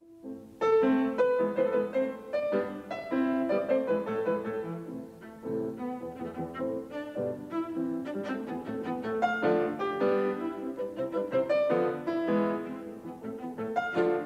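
Recorded chamber-music scherzo, mainly bowed strings, played back over loudspeakers. It starts just under a second in, after a brief silence, as a lightning-fast, very syncopated stream of short notes.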